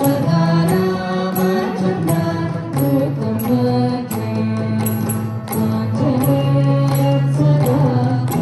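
Carnatic devotional song performed by a large ensemble of veenas plucked together, with a group of voices singing in unison over them. The plucked strokes fall about twice a second under long held sung notes.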